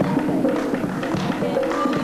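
Women singing a traditional folk song to a hand drum beating a steady rhythm, about three to four strokes a second.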